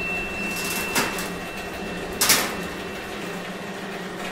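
Mechanical sound effects of a cartoon robotic claw machine: a steady low hum, a click about a second in, and a short loud burst of noise just after two seconds as the machine works the crate.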